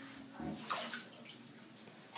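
Water sloshing in a shallow bathtub and wet scrubbing as hands work a dog's soaked fur, with a soft thump about half a second in.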